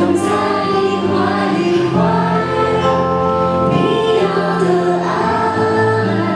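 Live pop ballad: a female singer's voice over band accompaniment, with long held notes.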